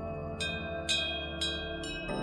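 Cowbells ringing, four strikes about half a second apart, each with a bright ringing tone. Beneath them runs a steady ambient music drone that guides the breathing exercise.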